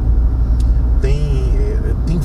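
Steady low rumble of a car's engine and tyres heard inside the cabin while driving. About a second in, a man makes a drawn-out hesitation sound lasting about a second.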